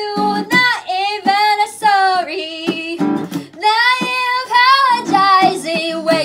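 A woman singing a melody with plucked acoustic guitar accompaniment, her voice sliding between held notes.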